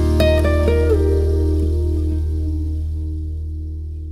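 Closing bars of a slow acoustic ballad with no singing: a few plucked acoustic guitar notes, one bending slightly in pitch, over a held low bass note. The final chord then rings out and slowly fades.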